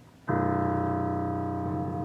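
Digital piano sounding the note again: struck about a third of a second in and held steadily, with the lower notes shifting slightly partway through.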